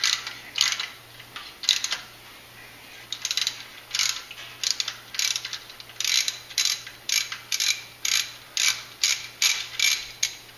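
Ratchet handle clicking in short strokes as a 1/8-inch NPT thread tap is turned in a drilled hole in a cast exhaust manifold. The strokes are spaced out at first and come about two a second in the second half.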